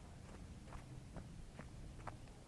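Faint footsteps of a person walking at a steady pace, about two steps a second.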